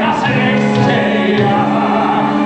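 Live musical-theatre score: orchestra with a chorus of voices singing held notes.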